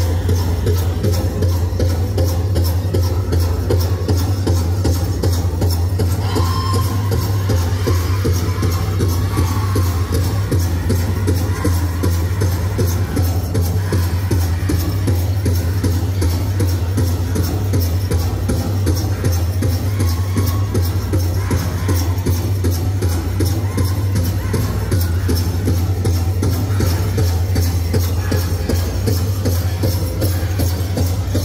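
Powwow drum group: a large drum struck in a steady, even beat with men singing over it.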